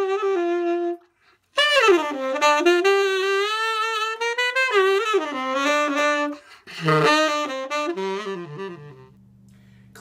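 Unaccompanied saxophone playing smooth-jazz licks. The phrases have scooped, sliding notes and wavering held notes, with a brief break about a second in and a quieter low note near the end.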